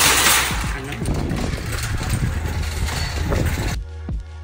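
Metal shopping cart rattling as it is pushed, under loud, steady noise with a low rumble; the sound cuts off abruptly just before the end.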